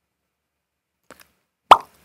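Near silence broken by two faint ticks a little after one second, then a single loud, very short pop near the end. It is an edited-in pop sound effect as the outro graphic disappears.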